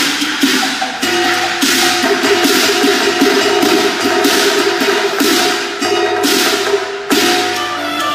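Cantonese opera accompaniment playing instrumental music: sharp percussion strikes roughly twice a second over sustained notes from the orchestra.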